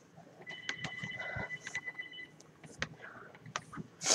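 A telephone ringing: an electronic tone on two steady pitches, held for almost two seconds from about half a second in. Scattered clicks of the webcam being handled run under it, and a loud rustle comes at the very end.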